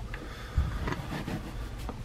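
Plastic baby-wipe warmer being opened: a low thump as the lid is pressed about half a second in, then a few faint clicks and rustles as a wipe is pulled out.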